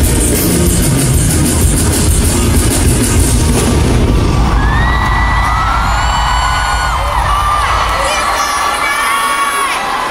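Loud pop dance track with heavy bass played over an arena sound system, dropping away about four seconds in. A large crowd of fans then screams in long, high-pitched wavering cries.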